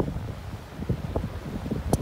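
Wind buffeting the microphone in uneven low rumbling gusts, over the wash of sea surf on a rocky shore.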